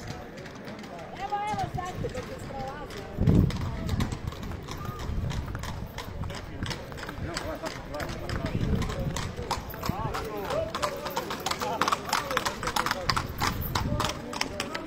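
Horses' hooves clip-clopping on a paved road as mounted riders go by. The hoofbeats grow quicker and denser in the second half.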